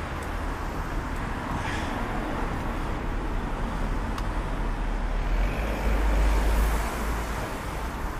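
Road traffic noise and low wind rumble on the microphone of a camera on a moving bicycle, swelling louder about six seconds in.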